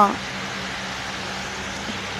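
Steady background noise with a constant low hum, after a spoken word that ends right at the start.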